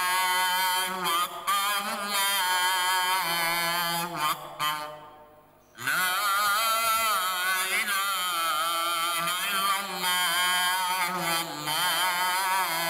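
An imam's single voice chanting a Quranic recitation aloud in Arabic during congregational prayer, in long, drawn-out melodic phrases, with a pause for breath about five seconds in.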